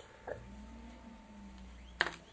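Toshiba 52HM84 DLP rear-projection TV powering on: a faint click about a third of a second in, then a faint, quiet low hum as the set starts up.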